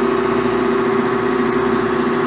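Electric motor and hydraulic pump of a 400-ton rubber pad press running with a steady hum, driving the bolster slowly up toward the rubber box.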